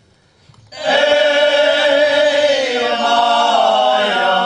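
Men's folk choir singing a cappella. After a brief pause a new phrase begins just under a second in and is held steadily.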